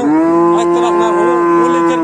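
A cow mooing: one long, loud call that rises briefly at the start and then holds at a steady pitch for about two seconds.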